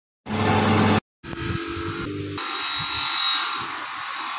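Grinding wheels in short edited cuts: a loud steady machine hum, a brief gap, another steady hum, then about two and a half seconds in a stainless steel knife blade ground against the spinning wheel with a hiss and a steady high whine.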